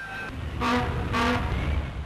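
Car engine running with a low rumble, and two short steady-pitched toots about half a second apart near the middle.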